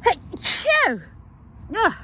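A woman sneezing: a sharp burst with a falling voiced 'choo', and a shorter falling vocal sound near the end.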